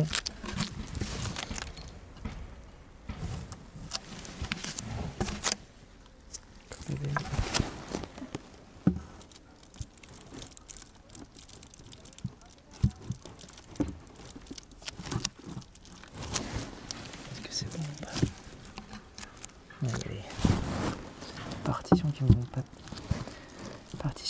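Wooden beehive cover boards being handled and set down on the hive box: scattered light knocks and scrapes of wood on wood, irregular and spread through the whole stretch.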